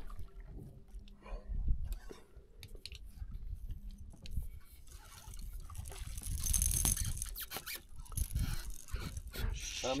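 A hooked catfish splashing at the water surface beside the boat, loudest about six seconds in, over a low rumble.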